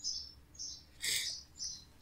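A bird chirping in the background: short high chirps about twice a second, the one just past the middle fuller and louder than the rest.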